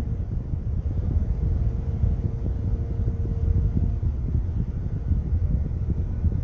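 Steady low rumble of a car heard from inside the cabin, with a faint thin hum above it for the first few seconds.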